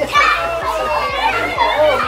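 A group of young children shouting and calling out excitedly all at once as they run and play.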